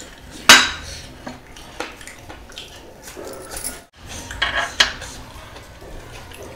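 Ceramic dishes clinking under a hand wearing heavy metal rings as it reaches into a bowl and a plate of food: one sharp, ringing clink about half a second in, and a quick run of smaller clinks about four and a half seconds in.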